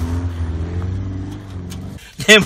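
Small four-cylinder engine of a Zastava 101 hatchback running at high revs as the car struggles to tow a trailer through deep snow. The engine note sags slightly and eases off near the end.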